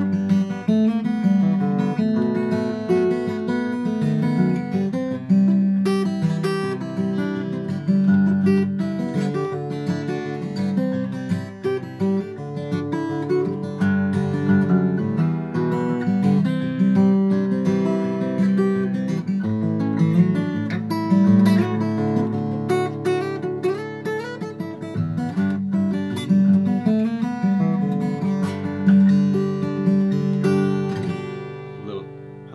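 A newly built Tahoe Guitar Co dreadnought acoustic guitar with Indian rosewood back and sides and a red spruce top, played fingerstyle: a continuous run of picked notes and chords. The guitar is barely played in, with about half an hour of playing time.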